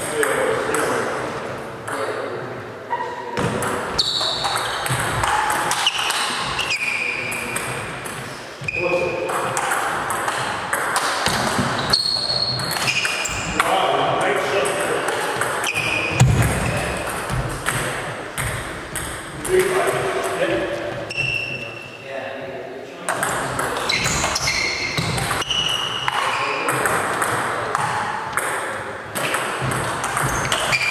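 Table tennis rally: the plastic ball clicking off bats and the table in quick, uneven strikes, with voices in the background.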